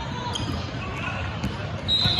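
A basketball bouncing a few times on a hardwood gym floor during play, with indistinct voices of players and spectators echoing in the large hall.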